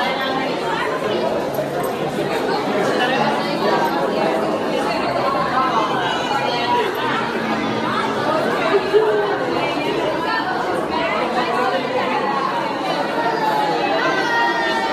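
Many people chattering at once in a large indoor hall, overlapping voices with no single clear speaker, steady throughout.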